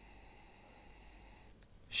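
A person faintly sniffing at a tasting glass of tequila, breathing in its aroma.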